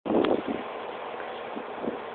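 A steady background rush of noise, with a brief loud bump right at the start.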